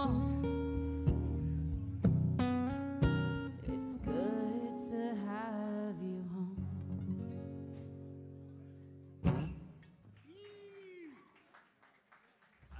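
Acoustic guitar playing the closing chords of a song, the notes ringing and slowly fading away. About nine seconds in there is one sharp strum or knock, then a short tone that rises and falls.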